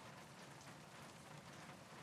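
Near silence: a faint, even background hiss with no distinct events.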